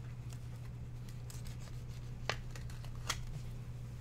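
A baseball card being slid into a plastic sleeve and a rigid plastic top-loader: soft rustling and sliding of card and plastic, with two sharp plastic clicks less than a second apart past the halfway point, over a steady low hum.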